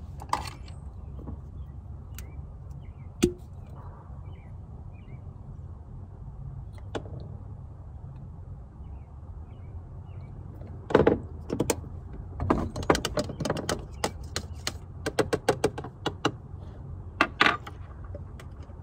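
Clicks and clatter of small hard pieces of camp-cooking gear being handled, scattered at first and then coming thick and fast in the second half, over a steady low rumble.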